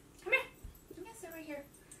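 Small dog giving one short, sharp yip about a third of a second in, then a few quieter, falling whines.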